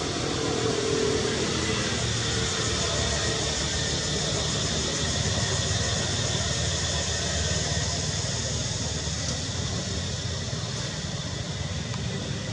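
Steady outdoor background noise: an even rushing hiss over a low rumble, with a faint wavering tone in the first two seconds.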